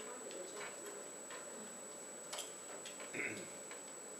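Scattered, irregular light clicks of a computer keyboard and mouse being used, over a steady faint high-pitched whine.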